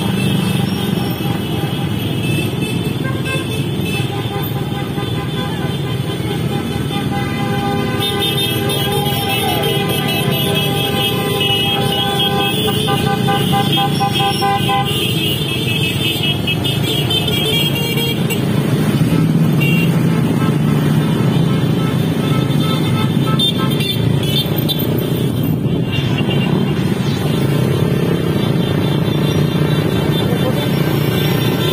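Many motorcycles running together in a slow procession, a steady engine and road rumble, with horns tooting, strongest in a stretch of held tones about a third of the way in. Music is mixed in.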